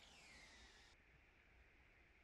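Near silence: faint room tone, with a faint high whine falling in pitch that stops about a second in.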